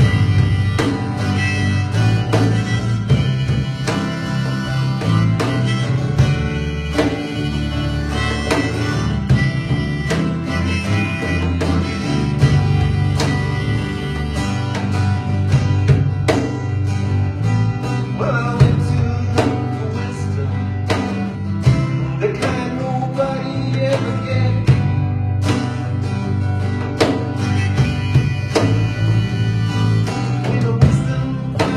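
A small folk-blues band plays an instrumental passage: acoustic guitar strummed in a steady rhythm over bass guitar and cajon. A wavering melody line rises over it in the second half.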